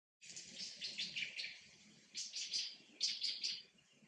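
Birds chirping in rapid runs of short, high-pitched calls, in three clusters with brief pauses between them.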